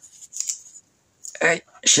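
Brief scratchy rustle of clear plastic protective film as fingers rub and grip a film-wrapped smartphone, in the first second, followed by a man's voice.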